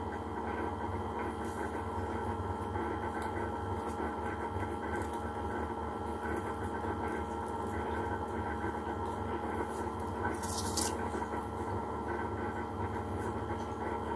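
A steady background hum made of several constant tones, with a brief soft rustle about ten seconds in.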